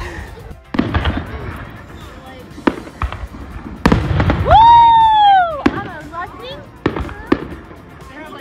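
Fireworks going off: several sharp bangs, and, loudest, a whistling firework that holds one pitch for about a second and a half before falling away.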